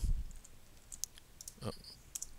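A few isolated, faint clicks of computer keyboard and mouse input as code is edited, with a short vocal sound about three-quarters of the way through.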